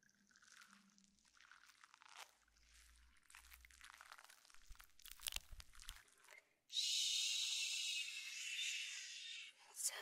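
Faint crinkling and clicking of small objects being handled. About seven seconds in, spoolie brushes (mascara wands) start a steady, scratchy brushing that lasts about three seconds.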